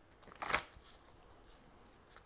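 A brief rustle of oracle cards being handled, a single short burst about half a second in, then low room tone.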